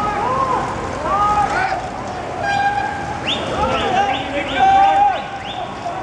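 A passing pack of cyclists whooping and shouting, many voices overlapping. From about halfway, several high toots and rising calls join in, the loudest a held tone near the fifth second.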